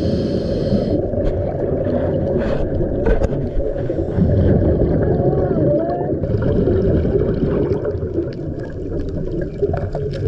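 Underwater sound through a dive camera's housing: a steady low rush of water noise, with a scuba diver's regulator breathing, hissing in the first second and again from about six to eight seconds in, and scattered small clicks.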